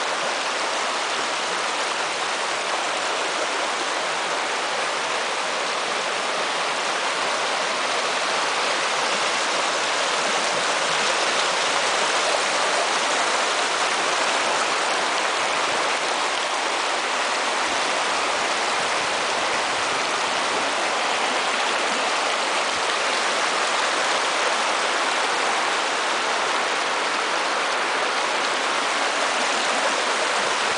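A small rocky stream running steadily over stones, rock structures and woody debris: an even, continuous rush of water that grows a little louder about ten seconds in.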